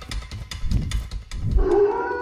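Percussive intro music with sharp drum hits. About one and a half seconds in, a wolf howl sound effect starts: one long, steady call.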